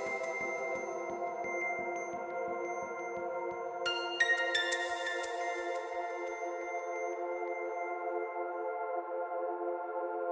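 Quiet electronic music as the track winds down: a held synth pad chord, with a soft low beat fading away over the first few seconds. About four seconds in, three quick high notes ring out and decay.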